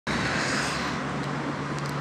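Steady road traffic noise from a nearby avenue: an even rush of passing cars with a faint low hum underneath.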